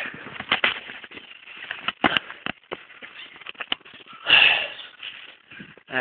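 Footsteps crunching irregularly on sandy gravel, with a loud sniff about four seconds in.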